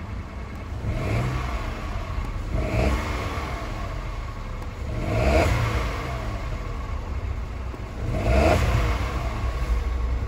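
Car engine idling with four blips of the throttle, the revs rising and falling back each time, about two to three seconds apart.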